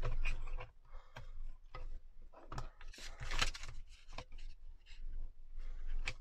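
Plastic letter punches of a We R Memory Keepers Word Punch Board clicking and knocking as they are shifted in the tray, with card stock rubbing and scraping against the board as it is pushed in and catches. The scrapes and clicks come in short uneven bursts.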